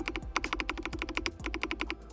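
Rapid keystrokes on an RK R104 mechanical keyboard fitted with light-force K White switches, about fourteen clicks a second with two brief pauses. The clicks stop just before the end.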